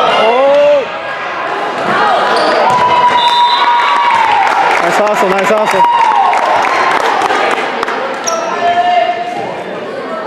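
Players and spectators shouting and cheering in a reverberant gym after a volleyball point is won, with long sustained yells in the middle. Sharp squeaks and knocks from shoes and the ball on the hardwood floor are scattered through it.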